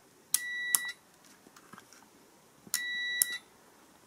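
A clamp multimeter's continuity beeper sounds twice, each a steady high beep of about half a second, as the test probes bridge the heater switch's contacts. The beeps show a closed circuit, confirming the switch contacts are conducting. Each beep starts with a small click.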